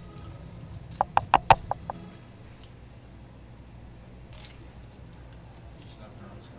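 A quick run of about seven sharp knocks about a second in, over in under a second, with a low steady hum around them.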